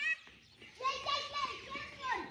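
Young children's high voices calling out: a short cry at the start, then a longer drawn-out call from about a second in.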